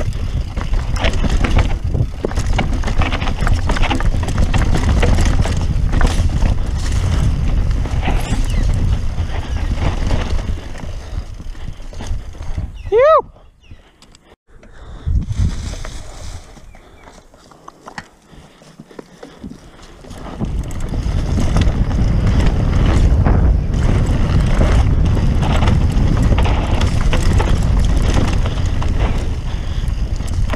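Mountain bike riding down a loose, rocky dirt trail: wind rushing on the microphone and tyres and frame rattling over the ground. About halfway through, the bike slows and the brakes give one short squeal as it stops. After a few quieter seconds the riding noise picks up again.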